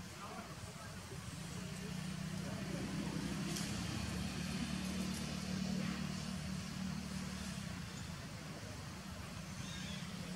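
A low, steady motor engine hum that swells through the middle and then fades again.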